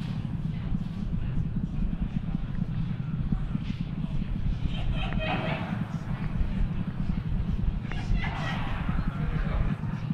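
Steady low rumble of the Falcon 9 first stage's nine Merlin engines in flight, cutting off just before the end at main engine cutoff (MECO). Faint voices come in over it twice.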